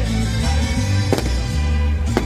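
Music with a strong, steady bass line, and a single sharp firework bang a little over a second in.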